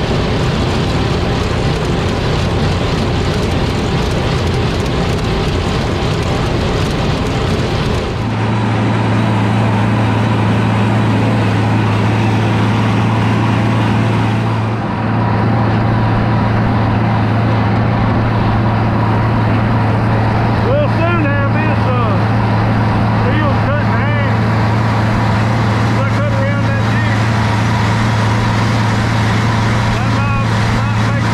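Disc mower conditioner cutting hay behind a tractor: the spinning cutter discs and conditioning rollers make a loud, steady, noisy din. About eight seconds in, this gives way to the tractor's engine droning steadily at constant working speed under the mower's load.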